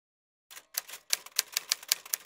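Typewriter key strikes typing out letters: a run of sharp clicks, about three a second, starting about half a second in.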